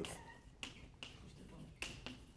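Chalk writing on a blackboard: a few faint, sharp clicks and taps as the chalk strikes the board.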